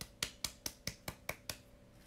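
A quick run of about eight sharp taps or claps, roughly five a second, growing fainter and stopping about a second and a half in.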